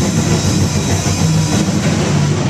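Acoustic drum kit played fast and loud, a dense unbroken run of drum strokes.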